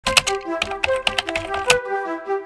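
A typing sound effect: a quick, uneven run of key clicks that stops shortly before the end. Under it runs background music, a light melody of short held notes.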